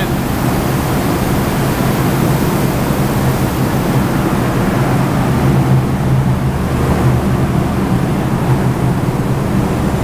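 Steady, loud din of brewery packaging-plant machinery, with a low, unchanging hum beneath it.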